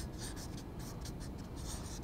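Felt-tip marker writing on flip-chart paper: faint, short scratchy strokes.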